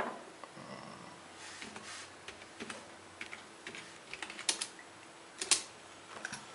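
Typing on a computer keyboard: irregular light key clicks, with a couple of louder clicks near the end.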